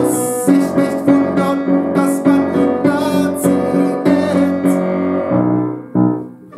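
Piano accompaniment played in chords struck about twice a second, fading away near the end.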